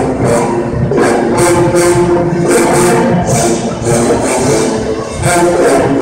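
University pep band playing: brass, including sousaphones, holding loud chords over a steady beat of drums and cymbals, about three hits a second.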